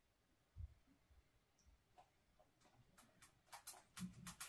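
Near silence, broken near the end by a quick run of faint light clicks: fingertips tapping on a smartphone screen.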